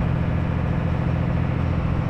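Small passenger ferry's engine running steadily under way, a constant low drone over an even wash of water and wind noise.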